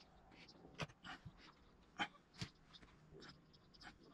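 Faint, irregular scrapes and ticks of a small pointed sculpting tool working oil-based modelling clay, a few sharper strokes among softer ones.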